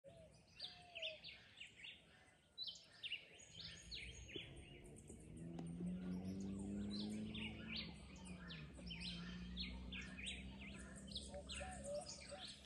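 Birds chirping repeatedly, many short calls one after another. A faint low steady hum comes in about four seconds in and holds underneath them.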